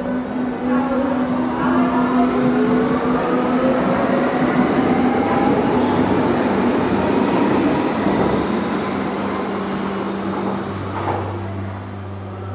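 A loud rumble with several whines rising together over the first few seconds and a steady hum underneath, like a train pulling away; a few faint high clicks come later, and the sound eases off near the end.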